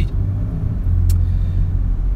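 Steady low rumble of a Lexus on the move, heard from inside its cabin, with a single short click about a second in.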